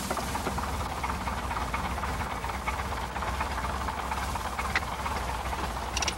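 Single-engine light propeller plane running: a steady low engine drone under a rush of propeller wash.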